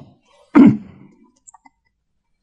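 A man's short voiced exhalation, like a sigh, a little over half a second in, followed by a few faint mouth clicks.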